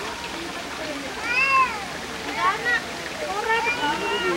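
A few short, indistinct spoken phrases over the steady rush of natural hot-spring water flowing among rocks.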